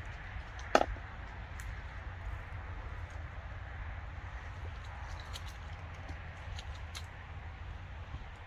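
A hooked carp being played at the surface and netted close in: faint splashing ticks from the water over a steady low rumble, with one sharp knock about a second in.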